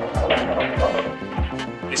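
Background music with a steady beat, and a short burst of noise soon after the start.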